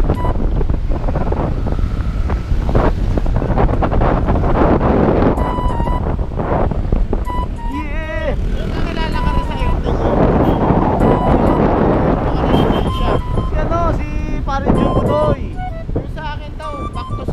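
Wind buffeting the microphone of a motorcycle-mounted camera while riding, with the motorcycle's engine running underneath. Short steady beeps and muffled voice or music sounds come and go over the wind.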